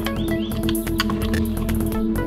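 Background music: held chords over a quick, regular beat of about four clicks a second.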